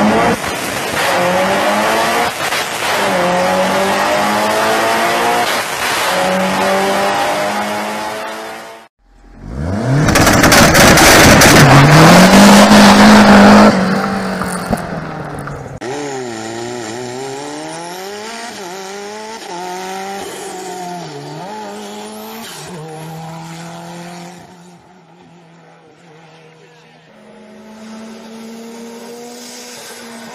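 Rally car engine revving hard through the gears, its pitch climbing and dropping again and again with each shift and lift. It cuts out briefly about nine seconds in, comes back at its loudest with a rush of noise for several seconds, then runs on quieter and farther off.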